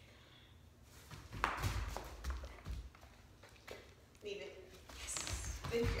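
A few soft thumps and taps about one and a half to two and a half seconds in, then a woman's voice near the end.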